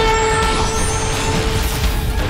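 Dramatic background score of the kind laid over a scene transition: a sustained drone over a low rumble, with shimmering high tones and a hissing whoosh that swells toward the end.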